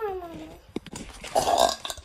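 A young woman's wordless vocal sounds: a drawn-out hum sliding down, up and down again that ends about half a second in, then a short, loud, rough throaty burst about a second and a half in.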